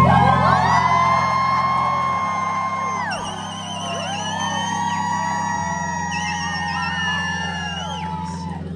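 Live band music: sustained chords over long held bass notes that change about two seconds in and again past halfway, with high wavering tones gliding up and down above them.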